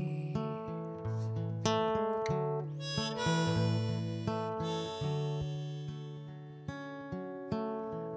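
Harmonica in a neck rack playing long held notes over a strummed acoustic guitar: an instrumental break in a folk song.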